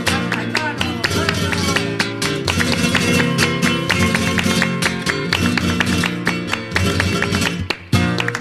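Flamenco guitar playing a bulerías passage without voice, dense with sharp percussive strikes throughout. The playing breaks off briefly just before the end.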